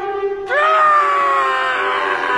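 A man's single long yell begins about half a second in, held and slowly falling in pitch, over music with a steady held note.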